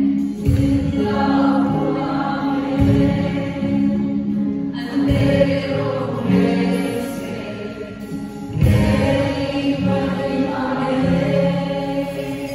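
A congregation singing a Hindi worship song together, led by a live worship band with electric guitar. Deep bass notes return every couple of seconds under the voices.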